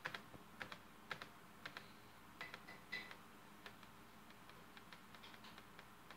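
Faint, irregular clicking over near silence, like keys or buttons being pressed, with about a dozen clicks in the first four seconds and only a few fainter ones after.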